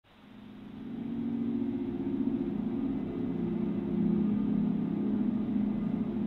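Low, dark rumbling drone of a soundtrack intro, fading in over the first second and then holding steady.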